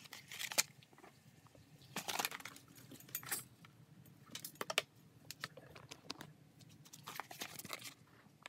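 Thin metallic foil sheet and paper being handled, crinkling and rustling in short irregular bursts.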